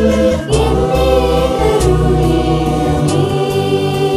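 A virtual choir singing a Malayalam Christian song in multi-part harmony, many voices holding sustained chords that change about half a second in.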